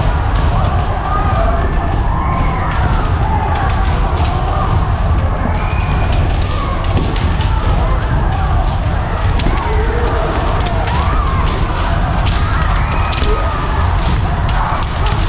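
Many kendo practitioners sparring at once: overlapping kiai shouts from many voices, frequent sharp cracks of bamboo shinai striking armour, and thuds of stamping footwork on a wooden floor, with a constant low rumble of the crowded hall.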